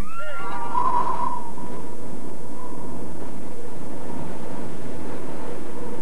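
A steady rushing noise with a faint steady tone in it. It opens with a few quick falling whistle-like glides.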